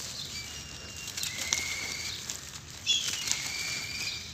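Dry charcoal-ash blocks crumbled between bare hands: a gritty, crackly rustle with small crunches as the block breaks apart and grains fall onto the dusty floor. The sharpest crunch comes about three seconds in.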